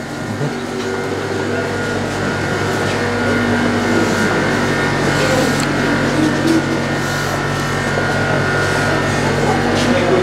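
Steady mechanical hum of refrigeration equipment (freezers and cold-room cooling units), several even tones over a whirring noise, slowly growing louder. Faint voices and footsteps of a small crowd mix in.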